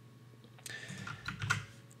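A handful of keystrokes on a computer keyboard, starting about half a second in and stopping shortly before the end.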